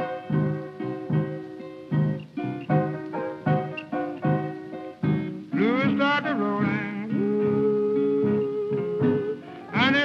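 Blues piano and acoustic guitar accompaniment playing chords at a steady beat. About halfway through, a voice slides up into a long held note.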